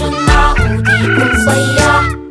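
A rooster crows, one long drawn-out call in the second half, over an upbeat children's song.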